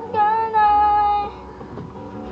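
A boy singing a held note over acoustic guitar. The voice stops a little past halfway, leaving quieter guitar playing.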